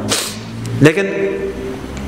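A man's voice through a microphone. A short, sharp hiss comes just after the start, then a drawn-out syllable about a second in.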